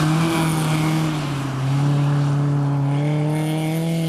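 Engine of a classic Lada sedan running hard as it slides sideways on an ice track; the revs dip about a second in, then climb steadily.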